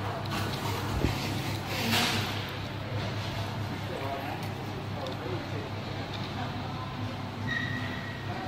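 Restaurant background: indistinct voices over a steady low hum, with a short hissing burst about two seconds in and a brief high beep near the end.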